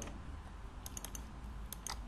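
Faint clicks at a computer while a file is chosen for upload: a quick run of about four clicks about a second in and two more near the end, over a low steady background hiss.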